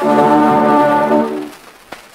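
Early acoustic Columbia disc recording of an orchestra, with the brass prominent, holding a loud chord that dies away about a second and a half in. The old disc's surface hiss and crackle is left behind, with one sharp click near the end.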